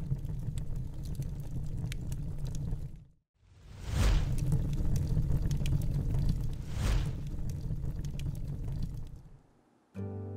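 Fire sound effect for a title animation: a low rumble of burning flames with scattered crackles. It breaks off briefly about three seconds in, then resumes with two loud whooshing flare-ups about three seconds apart, and fades out near the end.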